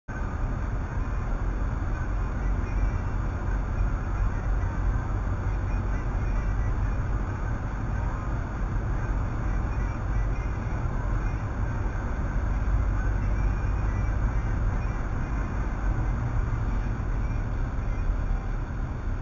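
Steady road and engine noise heard from inside a car's cabin while it drives at highway speed. It is an even, unbroken noise, heaviest in the low end.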